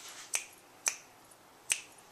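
Fingers snapping three times, sharp single snaps about half a second to a second apart.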